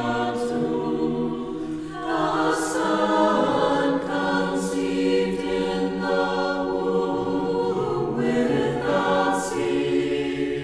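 Orthodox liturgical chant sung by a church choir without instruments: long held chords that move to new notes every few seconds, with sung consonants now and then.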